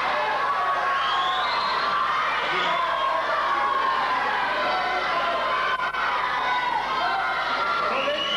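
Crowd shouting and cheering, many voices overlapping.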